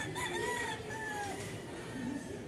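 A rooster crowing once: a single crow lasting about a second and a half that drops in pitch at the end.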